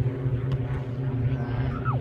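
A steady low mechanical hum, like a distant engine or machine, runs under the scene. There is a faint tap about half a second in.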